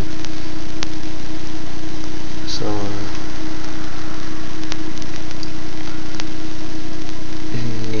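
A steady, loud hiss with a constant low hum and a single steady tone beneath it, unchanging throughout.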